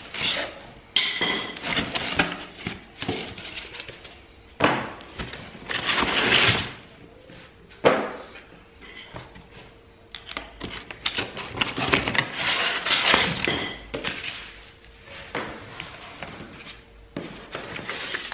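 Cardboard packing being pulled and pried out of a stapled shipping box with a screwdriver: irregular scraping, rustling and tearing of cardboard, with a sharp knock about eight seconds in.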